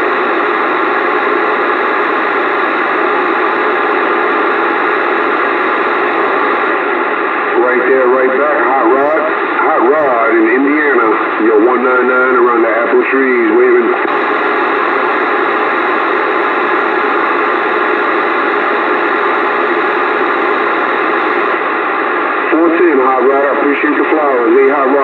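Bearcat CB radio receiving channel 28 on AM: a loud, steady hiss of static, with a weak voice coming up through it for several seconds in the middle and again near the end.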